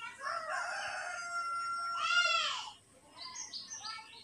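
A rooster crowing once: one long call of about two and a half seconds, held and then ending in a rise-and-fall. A few short, high bird chirps follow near the end.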